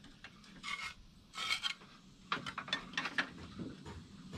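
Thick clay roof tiles scraping and rubbing against one another and the wooden battens as they are handled and slid into place. A few short scrapes, then a quicker run of them in the second half.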